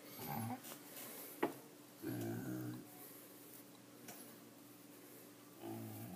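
A man's voice making three short, soft wordless murmurs, low-pitched, with a single sharp click about one and a half seconds in.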